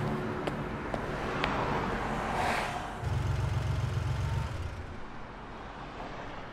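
Car engine running as the car pulls away, a low rumble that swells about three seconds in and then fades toward the end.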